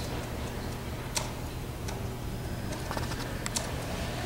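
Meeting-room ambience: a steady low hum with a few scattered sharp clicks and taps, one about a second in and a couple more near the end.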